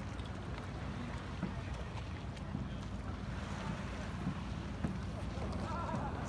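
Outdoor ambience: wind rumbling steadily on a phone microphone, with faint voices of people in the distance.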